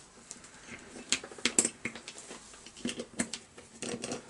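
Irregular light metallic clicks and taps of a screwdriver bit, screws and small parts as a heat insulator is screwed onto a chainsaw's new cylinder. The loudest click comes about a second and a half in.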